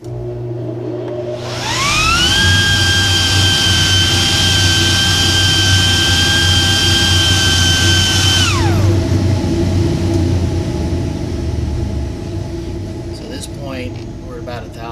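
Dust collection system running, with air rushing out of the 6-inch exhaust pipe over a steady low hum. About a second and a half in, a high whine rises in pitch and holds as the anemometer's vane spins in the exhaust stream, then falls away quickly near nine seconds as the meter is drawn back out of the flow.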